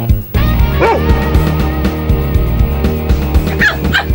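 Background music with a steady beat, over which a German Shepherd dog gives two short cries that slide in pitch, about a second in and near the end.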